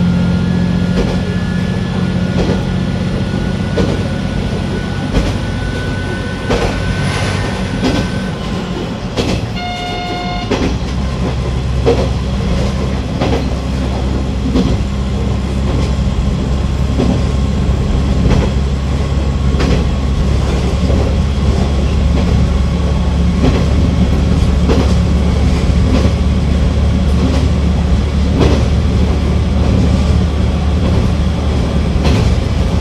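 KiHa 120 diesel railcar running along the line, its engine drone and wheel clicks over the rail joints heard throughout. A short horn blast comes about ten seconds in, after which the engine's low drone grows heavier.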